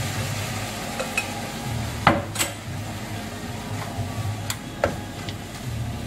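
A frying pan of onions with milk and smoked haddock just tipped in, sizzling steadily while it is stirred. A few sharp clinks and knocks of utensil and dishes against the pan, the loudest about two seconds in.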